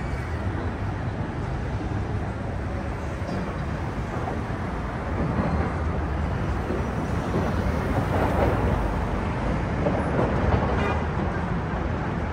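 City street traffic: cars on a multi-lane boulevard making a steady rush of engine and tyre noise, which grows louder about five seconds in.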